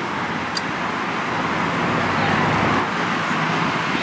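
Road traffic noise from a busy city street: a steady rush of passing vehicles that swells a little around the middle and eases off again.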